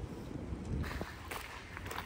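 Faint footsteps on a paved path, a few soft irregular steps, over a low wind rumble on the microphone.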